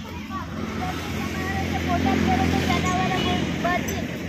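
Voices talking over the low rumble of a motor vehicle going by, which swells to its loudest in the middle and eases near the end.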